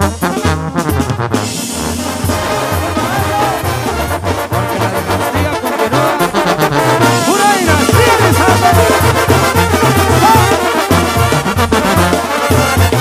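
Instrumental break in a Mexican regional song: brass horns playing over a bouncing low bass line that steps from note to note, with no singing.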